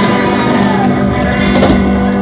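Live rock band playing loud, with electric guitar.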